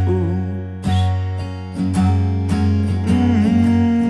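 Acoustic guitar strumming chords in a folk song, a new chord struck about once a second over a sustained low note.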